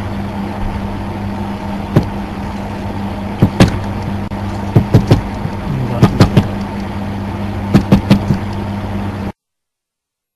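A steady low electrical-sounding hum with scattered sharp clicks, some in quick pairs and triples, cutting off suddenly near the end.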